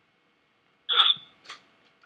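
A person's short, sudden vocal sound about a second in, followed by a fainter, briefer one about half a second later.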